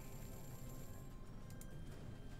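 Faint online slot game music with thin sustained tones, playing while a win total counts up.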